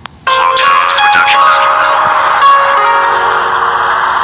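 Music starts suddenly a moment in, loud, with ringing chime-like notes coming in one after another.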